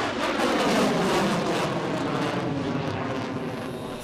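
F-22 Raptor fighter jet in flight, its twin turbofan engines making a steady, broad jet rumble that eases slightly toward the end.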